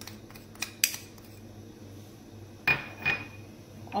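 Spoon and small glass bowl tapping against a steel pot as sugar is tipped into milk: a few light clicks in the first second, then two clear ringing clinks about a third of a second apart near the end.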